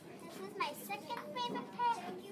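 Children's voices talking, high-pitched and indistinct, with no clear words.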